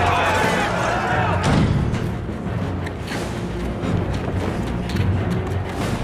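Tense film score with a low pulsing drone. Shouting voices in the first second or so, and several sharp thuds and hits over it.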